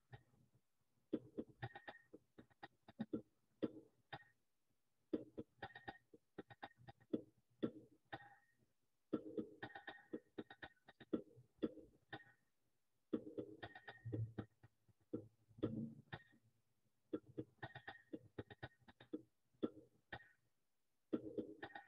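Recorded hand drums playing the chiftetelli rhythm, with low and high strokes in repeating phrases of about three and a half seconds, each followed by a short pause. The sound is faint.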